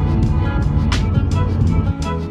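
Background music with sustained chords over a heavy bass and a sharp percussive hit about once a second.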